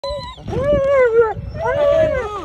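German Shepherd whining: three high, wavering whines in quick succession, the middle one the longest.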